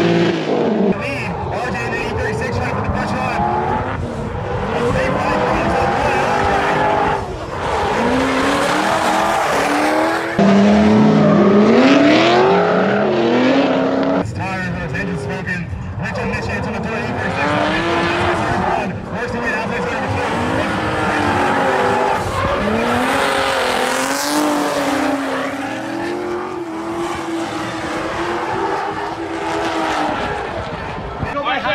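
Two drift cars, a Corvette and a BMW E36, in a tandem run: engines revving up and down again and again over the screech of sliding tires. The sound changes abruptly a few times.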